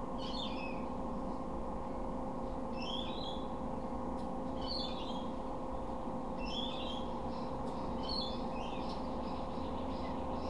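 Short bird chirps repeating every second or two over a steady low electrical hum.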